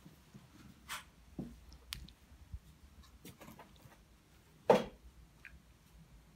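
Soft, scattered handling noises of hands working over whole scored fish on a wooden cutting board, with one short, sharper sound about three-quarters of the way in.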